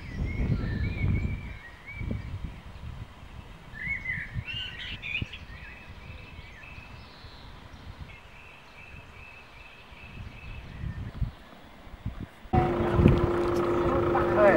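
Birds chirping and trilling outdoors over a low rumbling background noise. About twelve seconds in, a sudden louder passage with a steady hum and voices begins.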